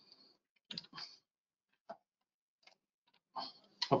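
A few faint, short clicks and small noises scattered through a quiet pause, with no speech.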